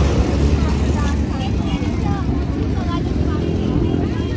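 Background chatter of a large crowd of people, with a steady low rumble underneath.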